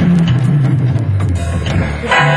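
Hammond Elegante XH-273 organ playing with its built-in rhythm accompaniment: a moving bass line with short drum-machine cymbal ticks on top, and only a few held chords.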